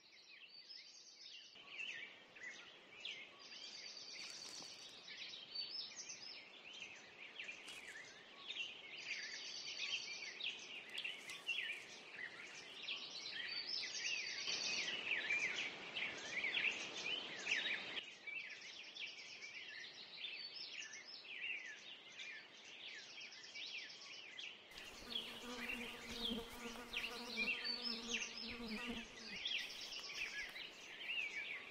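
Summer meadow ambience: many small birds chirping and singing continuously, with buzzing insect trills at intervals. Near the end a low steady droning tone with overtones comes in underneath.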